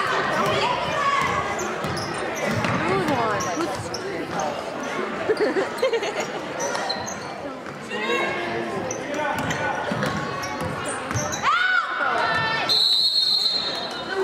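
Basketball bouncing on a hardwood gym floor amid spectators' voices and shouts echoing in the hall. Near the end a referee's whistle blows for about a second, stopping play.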